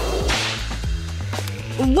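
A swish transition sound effect starting just after the beginning, its hiss fading away over about a second, over steady background music.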